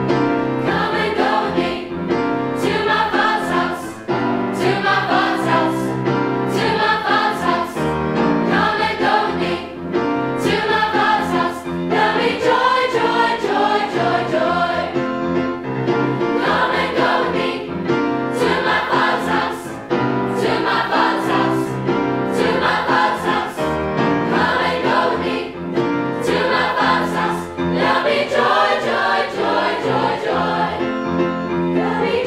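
Youth choir of mixed voices singing in parts, with rhythmic phrasing.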